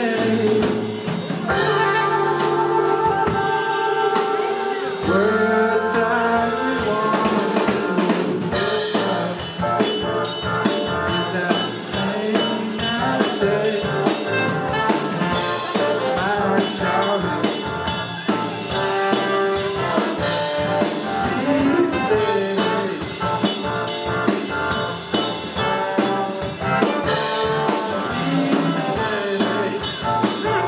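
Live band playing: drum kit, electric guitar, keyboard and a horn section of trombone and saxophone. A held chord for the first few seconds gives way to a busy, driving groove.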